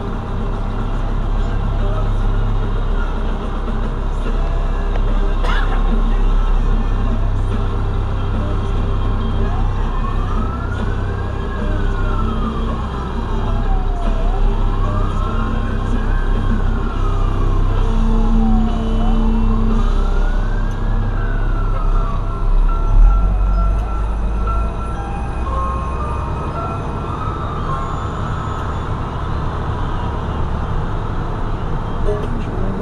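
Fire truck siren wailing up and down three times through the middle, each rise and fall taking about four to five seconds, over the steady engine rumble of a fire truck heard from inside its cab. There is a brief low thump about two-thirds through.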